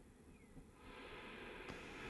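Near silence, then a faint steady hiss comes in just under a second in and holds.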